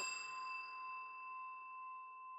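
A single bell-like ding ringing out with a steady, clear tone and slowly fading away.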